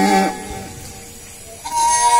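A man's sung phrase ends just after the start, a short lull follows, and about a second and a half in a bowed wooden folk fiddle begins a steady, held high note.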